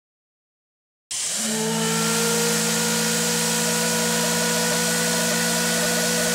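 Logo-sting sound effect: after dead silence, a loud steady rushing hiss with a held low hum and a few higher steady tones starts suddenly about a second in.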